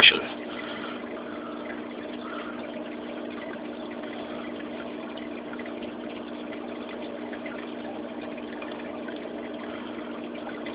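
Steady hum of a reef aquarium's water pump running, with a light wash of circulating water.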